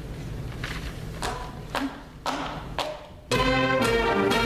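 A school jazz band starting a funk-rock tune. Four evenly spaced taps count it in about half a second apart, then the full band comes in together a little past three seconds in, with saxophones and brass over the drum kit.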